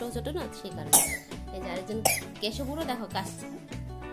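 A woman talking in Bengali over background music with a regular low beat, with a short, loud, sharp noise about a second in.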